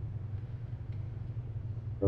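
Room tone in a pause of a live concert: a steady low hum with faint background noise, and one faint click about a second in.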